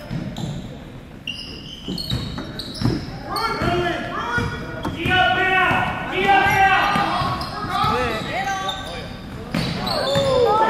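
Basketball game in a large gym: a ball bouncing on the hardwood floor, short sneaker squeaks, and overlapping shouts from players and spectators, echoing in the hall. The voices swell from a few seconds in.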